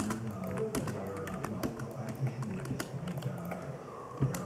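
Computer keyboard typing: quick, irregular key clicks, over a radio broadcast of voice and music playing in the background.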